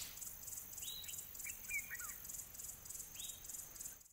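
Faint nature ambience: a steady high insect trill pulsing about four times a second, with a few short bird calls over it, about a second in, a little cluster just before the midpoint and one more near the end.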